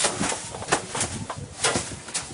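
A bundle of dry grass fibres swung and slapped against a body and a metal deck: a run of irregular sharp swishes and smacks, a few a second.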